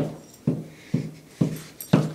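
Large dog right at the microphone making short, regular breathy sounds with a low hum, about two a second.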